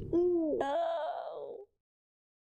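A woman's voice making two drawn-out wordless sounds during a hug. The first rises and falls in pitch; the second is higher and wavers. The sound cuts off suddenly about one and a half seconds in.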